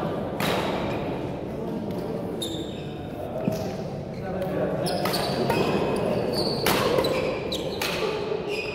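Echoing chatter of voices in a large sports hall, with short high squeaks of sports shoes on the wooden court floor and a few sharp knocks.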